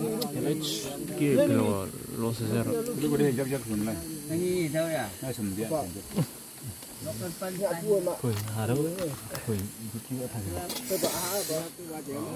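People talking throughout, over a steady faint high hiss.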